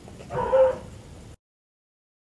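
A five-month-old Belgian Tervuren puppy giving one short, loud bark.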